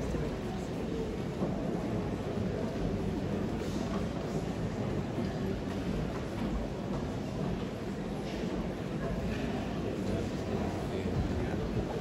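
Steady murmur of a large audience talking quietly in an auditorium, a low, even hubbub with no clear music.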